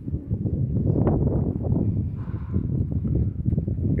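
Loud, uneven low rumble of wind buffeting a phone microphone, with the crunch of footsteps on dry, gravelly dirt.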